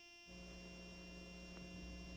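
Near silence with a faint steady electrical hum.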